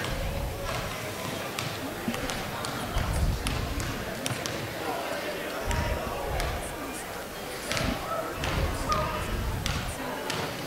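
A basketball bouncing on a hardwood gym floor in a few scattered thuds, with people chattering in the background.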